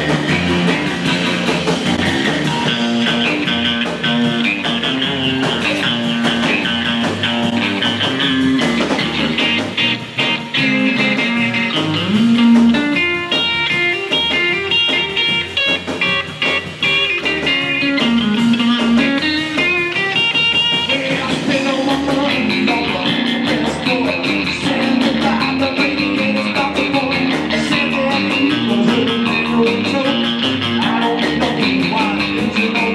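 Live rockabilly trio of electric lead guitar, upright bass and drums playing a passage without words, with quick guitar runs in the middle.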